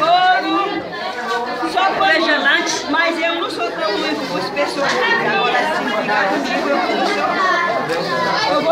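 A crowd of children chattering and calling out at once, many voices overlapping.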